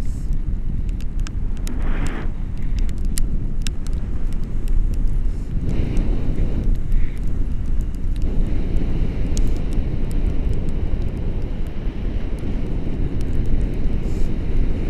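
Airflow of a tandem paraglider in flight rushing over the action camera's microphone: a steady low rumble of wind noise, with many small clicks all through it.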